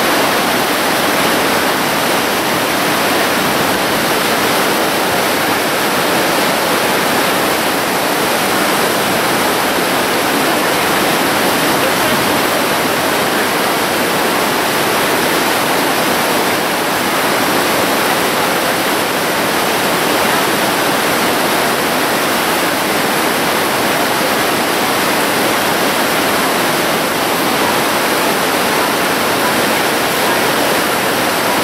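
Fast whitewater rapids on the Niagara River rushing past the bank: a loud, steady wash of water noise that never lets up.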